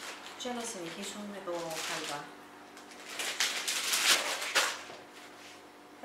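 Clear plastic zip bag crinkling and rustling as it is handled and sealed around a ball of dough, loudest about three to four and a half seconds in.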